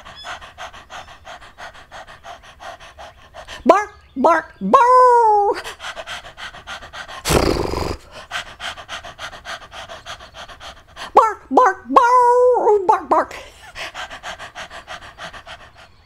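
Dog panting fast, about five pants a second, broken twice by short rising, wavering whines and yips, with a short loud huff about halfway through.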